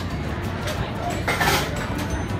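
Rapid knife chops on a plastic cutting board as a green pepper is diced, several short knocks a second, with a brief louder rush of noise about halfway through.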